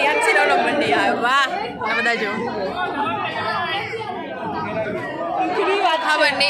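Women talking close to the microphone over the chatter of a crowd.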